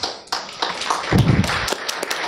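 Audience applause: many scattered hand claps that start about a third of a second in and run on, with a short low rumble around the middle.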